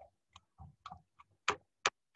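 A quiet, irregular run of short sharp clicks from a computer mouse, about six in two seconds, with the two loudest in the second half.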